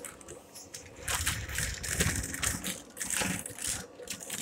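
Irregular rustling and rubbing noise of a handheld camera or phone being moved in the hand, fingers and fabric brushing the microphone.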